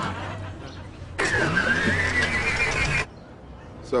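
An old car's engine cranked by its starter without catching, a wavering whine slowly rising over the low churn. It begins suddenly about a second in and cuts off abruptly near the end.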